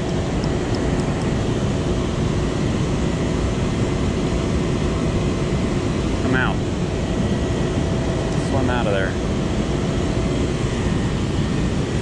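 Steady rushing of water pouring over a low-head dam spillway.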